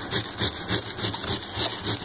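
Cabbage being rubbed quickly up and down a Chef Proven 2-in-1 handheld rasp-style metal zester/grater: a rapid, rhythmic rasping scrape of about four strokes a second.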